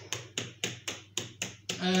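Quick, regular taps, about four a second, as fingers press the rolled filo edge of a pie down against a metal baking tray.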